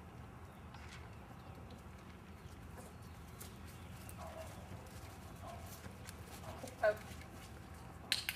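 A young horse and its handler walking on a dirt paddock, with soft hoof and boot steps and scattered short ticks. A few brief vocal sounds are heard, the loudest a short call about seven seconds in.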